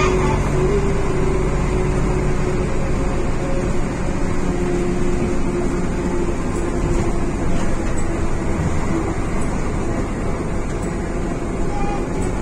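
Karosa ŠL 11 bus's diesel engine running under way, heard from inside the passenger cabin as a steady drone with a held whine that wavers slightly in pitch.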